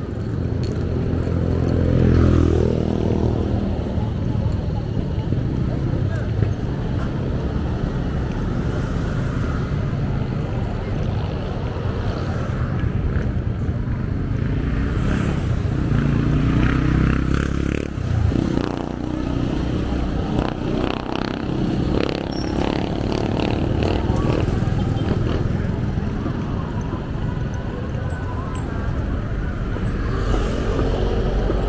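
Roadside traffic: motorcycles and other vehicles running and passing, with a continuous low engine rumble and one engine passing close about two seconds in. People are talking at the stalls, mostly in the middle stretch.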